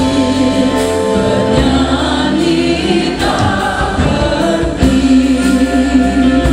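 A young man and two young women singing an Indonesian Christian hymn together into handheld microphones, over a steady instrumental accompaniment.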